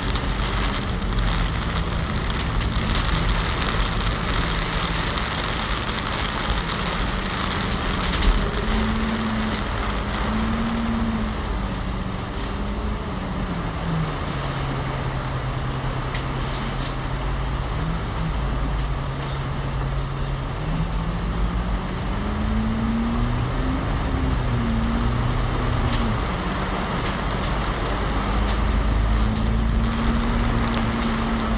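Cummins L9 diesel engine of an Alexander Dennis Enviro500 MMC double-decker bus heard from inside, its hum rising in pitch as the bus pulls away and falling as it eases off, steady in between. Tyre and road hiss from the wet road runs underneath.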